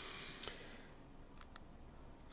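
Quiet room tone with a faint hiss, broken by a few faint, sharp clicks: one about half a second in and two in quick succession around a second and a half.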